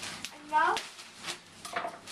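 Plastic bag of frozen mixed vegetables rustling and crinkling as it is opened and handled, with a short rising voice sound about half a second in and another brief one near the end.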